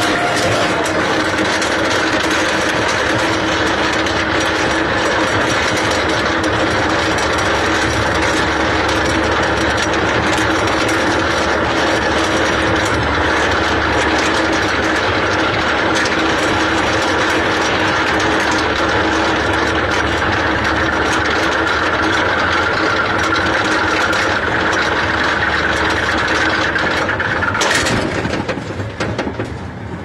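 Roller coaster lift-hill chain hauling the car up the slope: a loud, steady mechanical clatter with a constant hum under it. Near the end there is a single clunk and the clatter drops away as the car leaves the chain at the crest.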